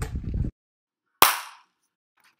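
Low wind rumble on an outdoor microphone that cuts off abruptly about a quarter of the way in, then silence broken by one sharp crack with a short ringing tail just past the middle.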